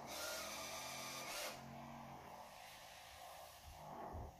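iRobot Braava Jet 240 mopping robot running in wet mopping mode: a faint, steady mechanical hum from its drive and vibrating mopping pad, a little louder for the first second and a half.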